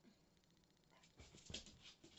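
Near silence with faint sounds from a dog in the room: a brief light rattle under a second in, then a few soft knocks and shuffles in the second half.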